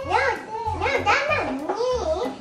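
A toddler girl talking in a high voice, over background music with a steady low beat.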